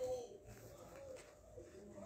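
Faint bird cooing in the background, a low call near the start and again about a second in, over quiet room tone.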